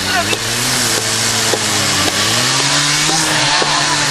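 A small petrol engine running, its pitch slowly dropping and rising again as the revs change.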